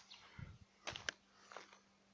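Near quiet outdoors: a few faint, short clicks and rustles over a faint steady low hum.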